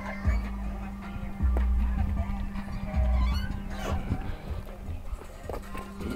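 Hip-hop music with heavy bass played through two cheap 12-inch subwoofers in a car trunk, driven by a 4000-watt Lanzar amplifier. Long, deep bass notes hit about a second and a half in and again about three seconds in.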